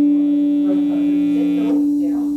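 Electric guitar notes held and ringing out through the amplifier, two pitches sustaining and slowly fading. The lower note dies away near the end while the upper one keeps ringing.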